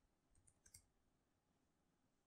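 Near silence with a handful of faint computer keyboard keystrokes in the first second, as a word is typed.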